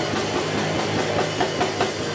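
Live rock band playing, with electric guitars and a Pearl drum kit.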